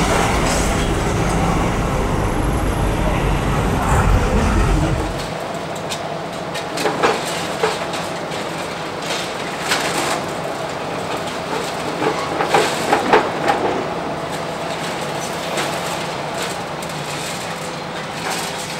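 Demolition excavator working a hydraulic crusher jaw on reinforced concrete: a heavy low rumble for the first five seconds, then sharp cracks and crunches of breaking concrete and falling rubble, loudest around the middle, over the machine's steady engine.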